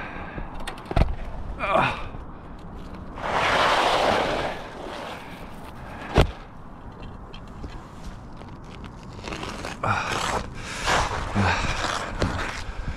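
Asphalt shingles being handled on a roof: a longer scraping, rustling stretch a few seconds in and more rustling near the end, with sharp knocks about a second in and, loudest, about six seconds in.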